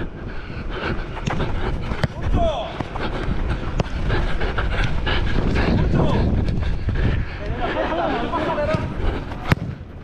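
A futsal player running with a body-worn camera on artificial turf: steady rustle and rumble from the running and movement, broken by many small knocks of footsteps and ball touches. A single sharp knock near the end, and brief shouts from other players.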